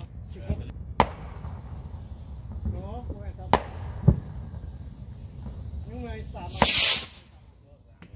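Consumer fireworks going off: four sharp bangs, spread over the first half, then a loud hiss lasting about half a second near the end.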